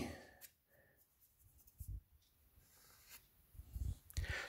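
Near silence with faint rubbing and handling noises from the box set's packaging, a short one about two seconds in and a few soft knocks near the end.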